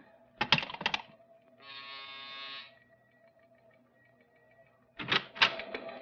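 Radio-drama sound effects: a telephone receiver clicked down in a quick cluster of clicks, then a buzzer sounding for about a second, then another cluster of clicks near the end.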